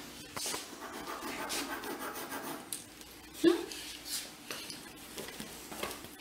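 Scratching and rubbing strokes of a drawing stick on a large sheet of paper, in short irregular passes, with one louder short rising squeak about halfway through.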